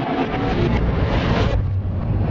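Logo sting sound effect: a loud, deep rumbling whoosh, its hiss thinning about three quarters of the way through.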